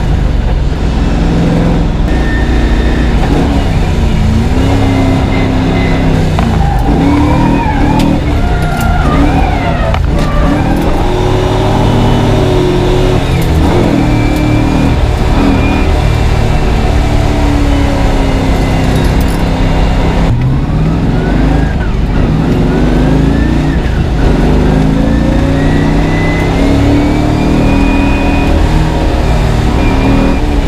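Nissan S13 drift car's engine heard from inside the cabin, revving up and down repeatedly as the car accelerates and shifts.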